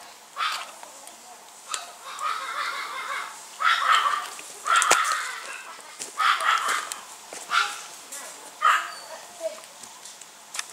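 A dog barking repeatedly, about eight separate sharp barks spread roughly a second apart.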